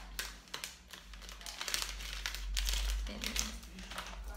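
Packaging crinkling and rustling in irregular bursts as a wristwatch is unwrapped by hand.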